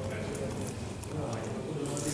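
Indistinct chatter of several people talking, with a few light clicks or knocks, one at the start and one near the end.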